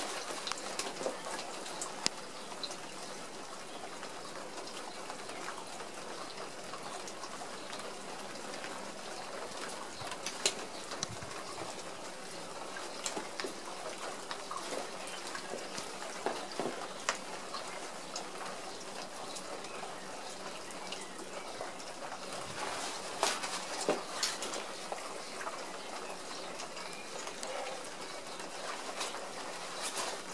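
Steady light rain, with scattered crackles of the clear plastic raincoat as it is handled and drops strike it; the crackles come thickest about three-quarters of the way through.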